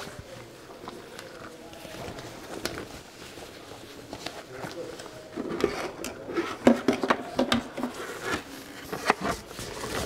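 Rubber insulating gloves being pulled on and a plastic face visor being handled: soft rubbing at first, then irregular clicks and knocks in the second half as the visor is picked up and lifted.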